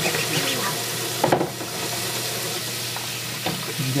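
Kitchen tap running steadily into a sink while dishes are scrubbed, with a short knock of a dish a little over a second in.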